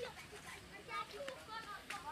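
Faint chatter of several people's voices, children's among them; no music is playing from the sound system.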